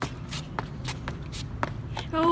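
Sneakers scuffing and shuffling on brick paving in a few short, irregular scrapes, over a low steady background rumble.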